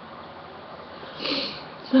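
One short sniff, a quick breath in through the nose, about a second in, over a faint steady hiss of room noise.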